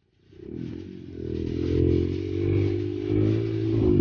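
Dirt bike engine running under way on a rough trail, its note rising and falling with the throttle, with some rattling from the bike over the ruts. The sound fades in from a brief silence just after the start.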